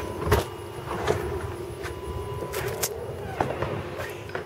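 Steady background hum with a few short clicks and knocks as a front door is opened and stepped through.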